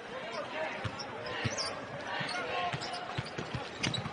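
A basketball being dribbled on a hardwood court, several separate bounces, over the steady noise of an arena crowd.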